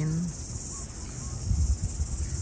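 A steady, high-pitched insect drone, with low rumbling bumps about one and a half seconds in.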